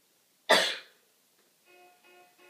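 A single loud, sharp cough about half a second in. Near the end, music starts up with a run of repeated pitched notes.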